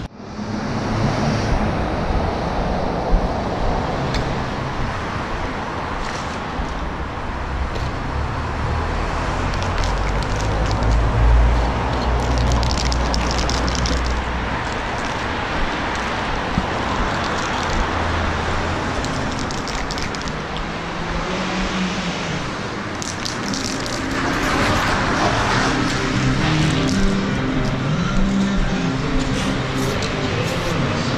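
A car door shuts at the start, then steady road traffic noise: cars running past with a low rumble, one passing loudest about eleven seconds in.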